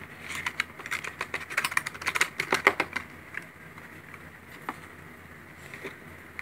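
A quick run of light clicks and taps as a black plastic blush compact is slid out of its cardboard box and handled, thinning out to a few scattered taps after about three seconds.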